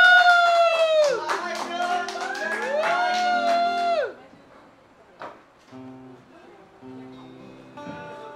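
Acoustic guitar chords under a high voice that sings two long held notes in the first four seconds, each sliding up at the start and dropping away at the end. After that the guitar goes on alone, more quietly.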